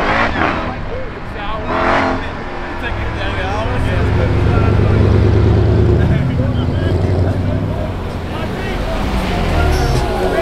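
Car engines running at low speed as a car drives past close by. The engine drone builds to its loudest about halfway through and then fades.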